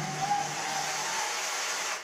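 Television sound from a concert broadcast: a steady wash of noise with faint music underneath.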